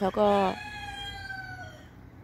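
A rooster crowing: one long call, quieter than the voice, that holds and then falls slowly in pitch near the end.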